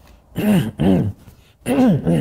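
A man clearing his throat in two pairs of short rasping bursts, the second pair about a second after the first, his throat irritated by dust he inhaled.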